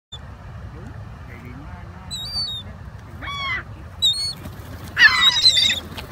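Ring-billed gulls calling: a few separate short calls from about two seconds in, then a loud burst of overlapping calls near the end as the flock gathers over the food.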